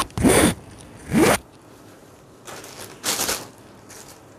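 Saree fabric rustling as it is shaken out and handled, in several short swishes: two loud ones in the first second and a half, then a fainter one and a last loud one past the three-second mark.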